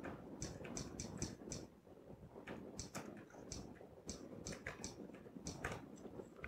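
Faint, unevenly spaced typing clicks, one key at a time, in a quick run and then a slower, halting run, as a short line of text is typed.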